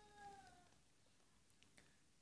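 Near silence, with a few faint laptop keyboard taps as a line of code is typed. A faint short tone lasting about half a second and sliding slightly down in pitch comes near the start.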